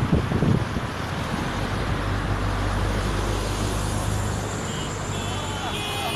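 Road noise from a moving vehicle, with wind gusting on the microphone at first and a steady low engine drone through the middle. Near the end a high, steady, multi-pitched tone comes in.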